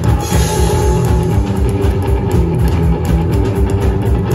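Live rockabilly band playing loud and steady through PA speakers: electric guitar, upright double bass and drum kit.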